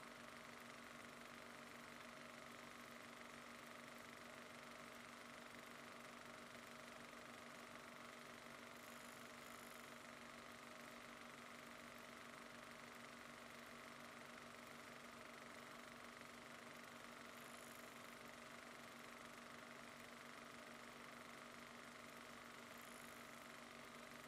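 Near silence: a faint, steady background hiss with a low hum.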